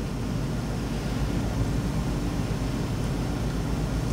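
Steady room noise: a low hum under an even hiss.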